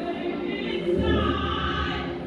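Choir singing held notes, with a low bass part coming in about a second in.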